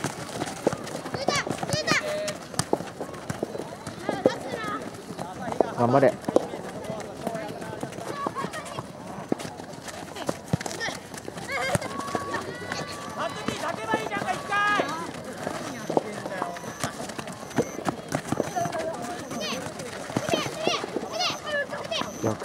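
Shouting and calling voices at a youth soccer game, including a cheer of "ganbare" ("come on!") about six seconds in, over running footsteps on a dirt pitch and scattered sharp knocks of the ball being kicked.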